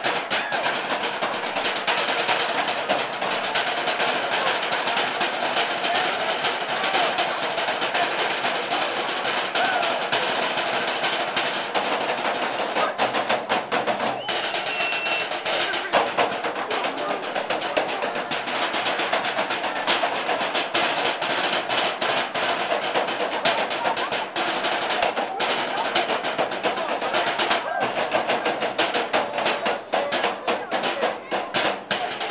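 Three players drumming on lidded galvanized metal trash cans with drumsticks: a fast, continuous rhythm of stick strikes on metal.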